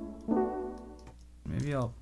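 Two synth chord stabs played back, each starting sharply and fading out within about a second; a man starts speaking near the end.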